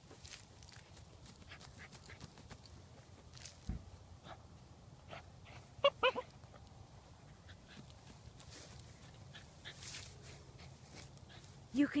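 Cairn terrier digging at turf with its paws, a run of scratching and tearing at grass and soil, with a thump just before four seconds in. About six seconds in the dog gives two short high whines.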